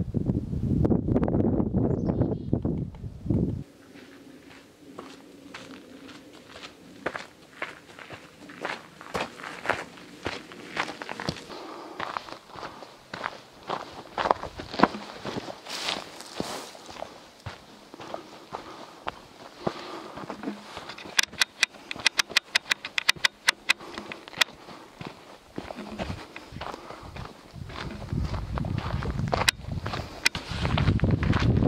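A hiker's footsteps on a trail, one step after another, with a quicker run of sharp ticks about three-quarters of the way through. A loud low rumble covers the first few seconds.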